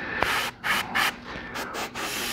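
Airbrush spraying black primer in several short spurts of hiss with brief pauses between them, as touch-up passes on a miniature.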